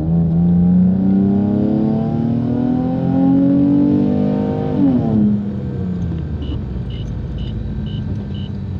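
2003 Nissan 350Z's 3.5-litre V6 engine and exhaust under hard acceleration: the pitch climbs steadily for about five seconds, then falls sharply and settles back to a cruise. Near the end a short high beep repeats about twice a second.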